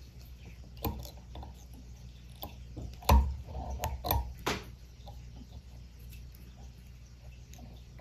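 Light, scattered clicks and ticks of a metal whip-finish tool and tying thread working at the head of a fly held in a vise, with a couple of louder taps about three and four and a half seconds in.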